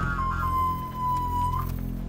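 Tense film score: a sustained high, whistle-like tone slowly sinks in pitch over a low drone, then breaks off near the end.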